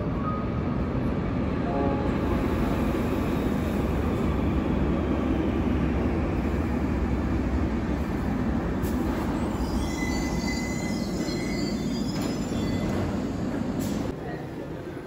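Metro train running into an underground station: a steady rumble of wheels on rail fills the platform. About ten seconds in, a thin, high brake squeal sets in as the train slows to a stop.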